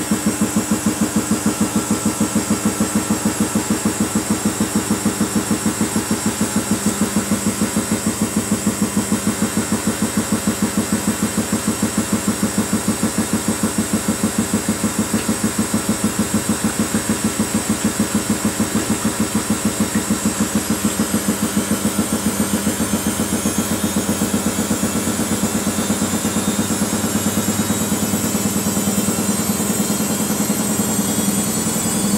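Samsung WF80 front-loading washing machine in its spin stage. The drum turns at about 400 rpm with an even pulse several times a second, and about two-thirds of the way through the motor whine starts to rise as the drum speeds up toward 600 rpm.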